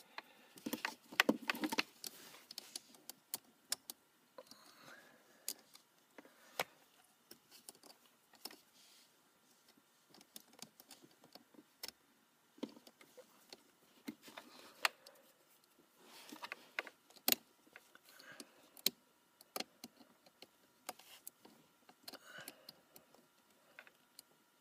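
Scattered small clicks, clinks and rustles from hands working a battery-charger pigtail's wires and metal ring terminals onto a car battery terminal.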